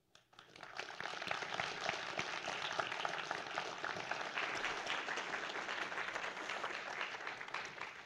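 A congregation applauding: many hands clapping together, starting just after the beginning, holding steady, and dying away near the end.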